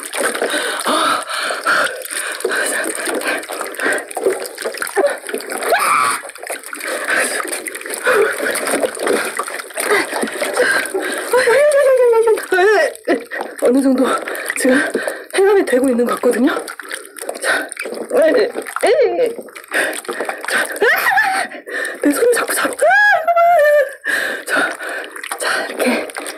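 A woman's voice talking over water splashing and sloshing in a glass baking dish as gloved hands stir live loaches being purged in coarse salt. About 23 seconds in her voice rises into a high cry.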